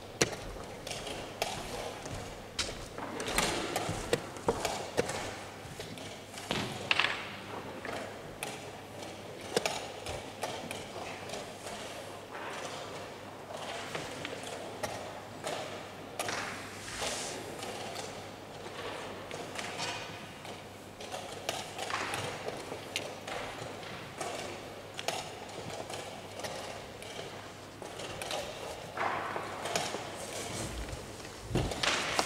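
Wooden chess pieces set down on a wooden board and a chess clock's buttons pressed during a blitz game: sharp knocks and clicks at irregular intervals, every second or few, over a steady background hum.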